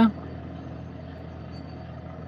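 A steady low background hum with no change in level, no clear pitch and no distinct events.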